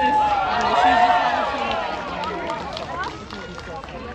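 Crowd chatter: several voices talking over each other at once, with no music playing.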